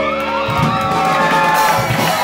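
A rock band's final chord rings out on guitar and stops about half a second in. It is followed by audience cheering and whoops at the song's end.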